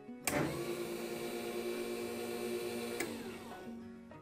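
A click as the open-frame 12 V SPDT relay energises and its normally open contact closes, then a small DC motor runs with a steady whine. About three seconds in there is another click, and the motor winds down and fades.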